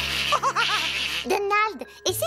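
Cartoon character voices giggling and laughing in short repeated bursts.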